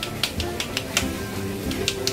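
Background music with held tones, over quick, repeated slaps of raw minced wagyu beef tossed from gloved hand to gloved hand to shape a hamburger-steak patty.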